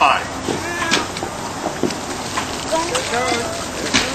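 Indistinct voices of people talking, in short snatches, over a steady hissing, crackling background noise.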